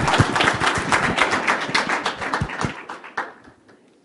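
Audience applauding, a dense patter of hand claps that thins out and dies away about three seconds in.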